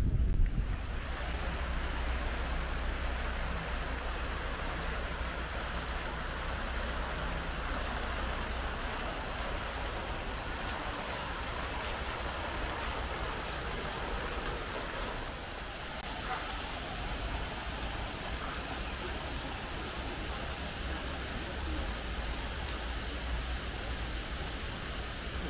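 Ornamental fountain jets and a stone cascade splashing into a pond, a steady, even rush of water.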